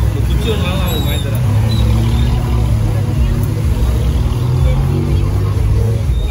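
Busy street noise dominated by the low hum of motorbike engines running close by, with people talking in the background.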